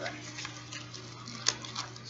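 Small jewelry box and its packaging being handled: faint rustling and light ticks, with one sharp click about one and a half seconds in and a couple of smaller ones after it, over a steady low electrical hum.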